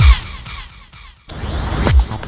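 Euro house track breaking down: the four-on-the-floor kick drum drops out and a swooshing effect falls away. After a brief dip near the middle, a rising noise sweep builds and the kick comes back in at the end.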